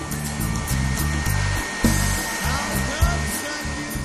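Handheld hair dryer blowing steadily on a painted T-shirt to dry the fabric paint: a constant rush of air with a thin high whine. Background music plays underneath.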